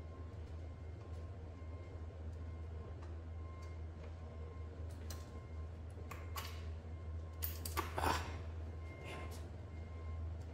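Faint small clicks and scrapes of hands fitting a spacer washer and bolt to an electric bike's rear brake caliper, bunched in the second half and loudest just before the end, over a steady low hum.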